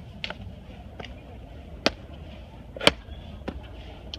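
Footsteps climbing stone steps: a sharp tap of a shoe on stone about once a second, over a low steady rumble.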